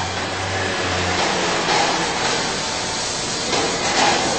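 Woodworking carbide tool grinder running with a steady hiss. A low hum underneath stops about a second in.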